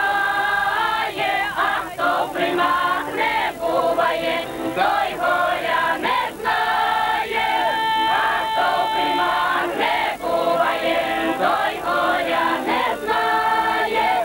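A group of women singing a folk song together, several voices at once in a chorus.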